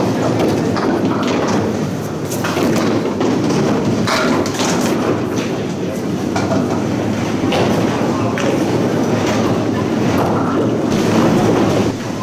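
Candlepin bowling: a steady rumble of small balls rolling on wooden lanes, with several sharp wooden clacks as the tall, thin pins are struck and fall.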